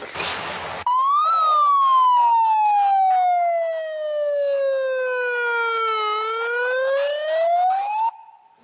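Handheld megaphone siren sounding, starting about a second in: a brief rise, then a long slow fall in pitch over about five seconds, then a rise again near the end.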